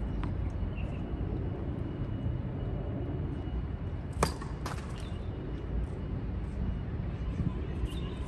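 A tennis serve: a sharp crack of the racket striking the ball about four seconds in, followed half a second later by a second, weaker knock, over a steady low background rumble. A few faint taps of the ball being bounced come at the start.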